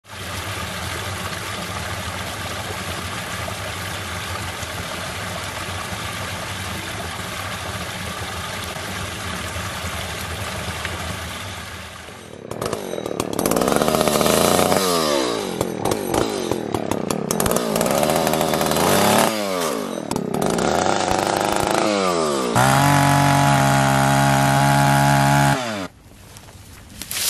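An engine running steadily for about the first twelve seconds. Then a two-stroke chainsaw revs up and down several times, each rev falling away in pitch as it cuts into a small tree overhead. It ends with a few seconds at full throttle that stop suddenly near the end.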